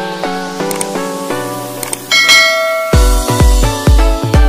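Outro jingle music: a run of short plucked, bell-like notes, a bright chime about two seconds in, then a heavy electronic beat with deep bass kicks starting near the end.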